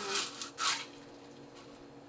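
Drinking straws pushed down into crushed ice in tall glasses: two short crunching scrapes within the first second.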